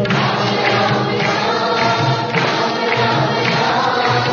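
A large group singing a devotional Rama bhajan in chorus, with a steady beat behind the voices.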